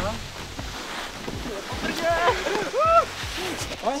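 Snowboards sliding and scraping over packed snow, a steady hiss, with excited vocal exclamations rising and falling in pitch in the second half.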